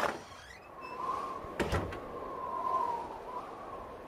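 Sound effects of a recorded classroom listening dialogue set in snowy weather: a door opens suddenly, then wind blows in a steady rush with a wavering whistle, with a single knock about one and a half seconds in.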